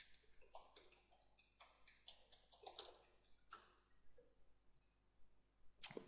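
Faint, irregular keyboard clicks: a user name and password being typed in to log on.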